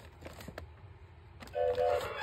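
Thomas & Friends talking Nia toy engine's small electronic speaker: a few faint clicks, then near the end two short two-tone electronic beeps.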